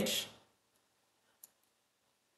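A single computer mouse click about one and a half seconds in, following the end of a spoken word; otherwise near silence.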